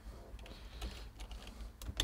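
Faint computer keyboard keystrokes: a few scattered taps, coming faster near the end as a name is typed into a field, over a low steady hum.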